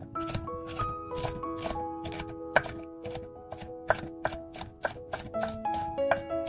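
Kitchen knife slicing a raw yellow bell pepper into strips on a wooden cutting board. The blade knocks through the pepper onto the board in a steady rhythm of about three or four strokes a second, with one sharper knock about halfway.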